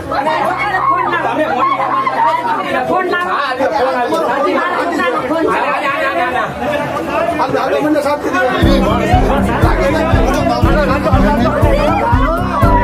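Many voices talking and shouting over one another in a crowd scuffle. Background music with a steady bass beat runs underneath, drops out a couple of seconds in, and comes back about two-thirds of the way through.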